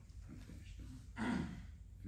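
A man's short, breathy sigh or exhale about a second in, over a low steady room hum.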